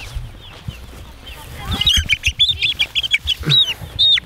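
Young meat chick peeping: faint chirps at first, then from about two seconds in a loud, rapid run of short, downward-sliding peeps.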